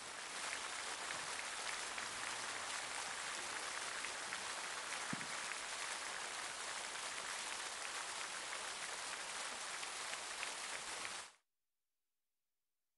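Crowd applauding steadily, a dense even patter of clapping, which cuts off suddenly near the end.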